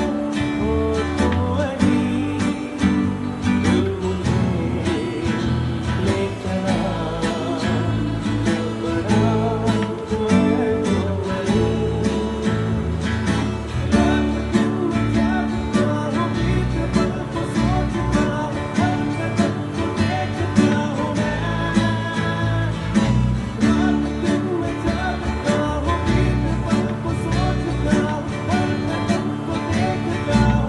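Acoustic guitar strumming chords, played along with a recorded song that has a singing voice and a steady beat.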